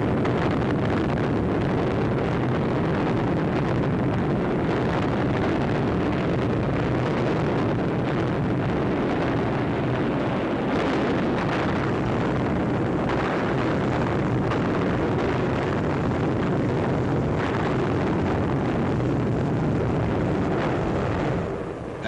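Bombs exploding on a target in a continuous, dense rumble, with a few sharper bursts standing out now and then.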